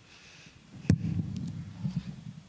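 Handling noise at a pulpit: one sharp knock about a second in, then low rumbling bumps and another small knock near the end.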